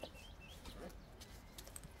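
Quiet rustling and faint clicks from a padded camera-style bag as its zipped lid is opened, with a few short, distant bird chirps in the first half-second.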